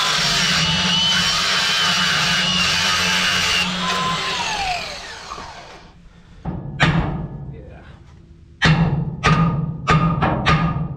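A cordless angle grinder runs on the steel trailer ram pin for about four seconds, then is let off and its whine falls away as the disc spins down. A few seconds later come about five hammer blows on the seized, twisted pin, each ringing, most of them near the end.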